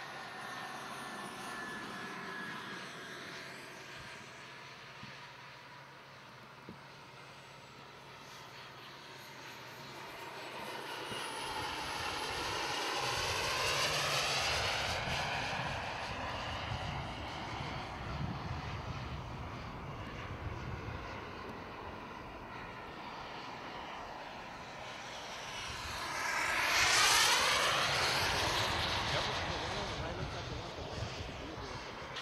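Small gas turbine engine of an RC Lockheed T-33 model jet whining as it makes two fast passes. Each pass swells to a peak and falls in pitch as the jet goes by. The second pass, near the end, is the loudest.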